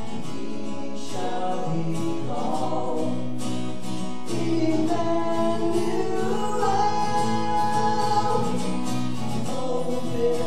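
Acoustic guitar strummed through the sound system in a worship song, with singing coming in about a second in over the chords.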